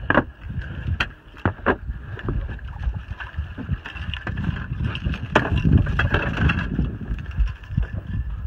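Wind rumbling on a phone's microphone, with handling noise as the phone is swung about, and a few sharp clicks or knocks in the first two seconds.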